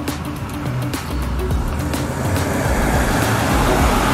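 Low, steady rumble of road traffic passing on the street, growing a little louder toward the end, with music playing underneath.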